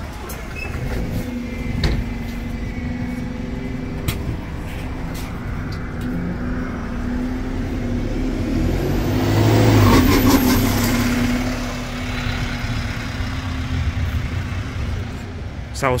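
Alexander Dennis Enviro200 MMC single-deck bus with a Voith automatic gearbox running at the stop with a steady hum, then pulling away: the engine and drivetrain build to their loudest about ten seconds in and fade as the bus moves off.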